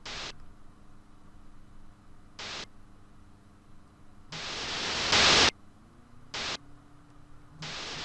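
Bursts of hissing static from a glitch sound effect: short bursts at the start and about two and a half seconds in, a longer one that swells from about four seconds in and cuts off suddenly a second later, then two more short ones near the end, over a faint steady hum.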